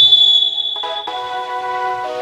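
A referee's whistle blown once, a loud shrill blast of about a second that cuts off sharply, signalling a violation. Background music plays underneath.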